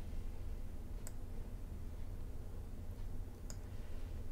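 Two faint clicks of a computer mouse, about two and a half seconds apart, over a steady low hum.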